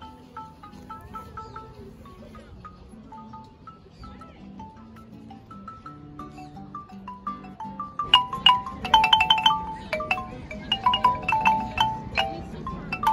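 Wooden marimba played with mallets, a melody of struck notes over lower notes. It is soft at first and gets much louder about eight seconds in, with quick repeated notes.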